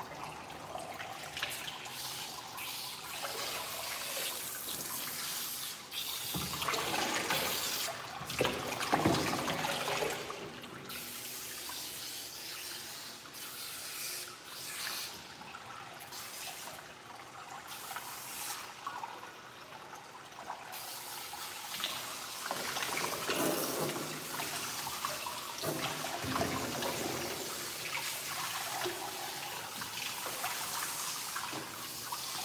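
Running water splashing over a dog's wet coat and into a bathing tub, getting louder and softer as the stream moves.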